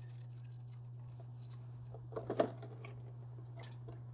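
Faint taps and clicks, a couple of them louder a little past halfway, over a steady low hum, as the transfer case drain plug is unscrewed by hand and gear oil starts to drain out.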